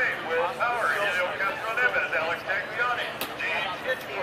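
Speech only: a voice talks on and on over outdoor background noise, with no race car heard.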